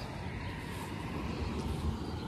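Steady low outdoor background rumble with a faint hiss and no distinct event.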